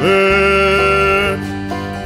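Acoustic folk-band song: a long held note over plucked acoustic guitar and bass, dying away about a second and a half in while the accompaniment carries on.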